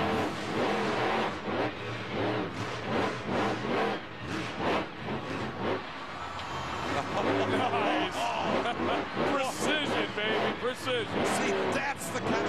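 Blue Thunder monster truck's engine revving hard and repeatedly, its note rising and falling with the throttle, as the truck drives through the dirt.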